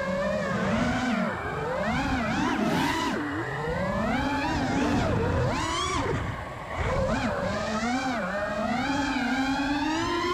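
Five-inch FPV freestyle quadcopter's brushless motors whining in flight, their pitch rising and falling steadily with the throttle. The throttle is cut briefly about six and a half seconds in, then the motors spool back up.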